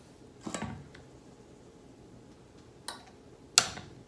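A metal mesh sieve and a small metal bowl knocking against the rim of a stainless steel stand-mixer bowl while flour is sifted in: three short metallic knocks, the last and loudest near the end.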